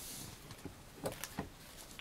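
Faint handling of a tarot card deck and its cardboard box: a brief rustle at the start, then two light clicks a little over a second in.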